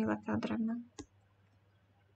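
A woman's voice finishing a spoken name, then a single sharp click about a second in, typical of a computer mouse clicking to advance a presentation slide, followed by a faint low hum.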